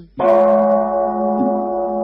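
A Buddhist chanting bell struck once, a moment in, then ringing on with a steady, slowly fading tone.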